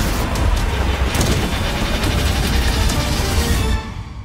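Loud dramatic trailer music mixed with dense action sound effects and a few sharp hits, dropping away suddenly near the end.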